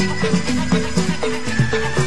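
Betawi gambang kromong dance music: drum strokes that drop in pitch, about four a second, under melodic notes and a high sustained line.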